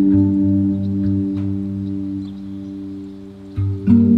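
Steel pandrum notes ringing and slowly fading over a steady low drum beat, as meditative music; new notes are struck near the end.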